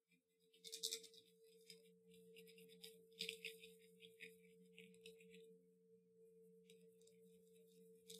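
Near silence: faint crackling handling noises from fingers working a small object, loudest about a second in and again around three seconds in, over a faint steady electrical hum.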